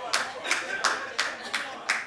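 Hand clapping in a steady, even rhythm, about three claps a second.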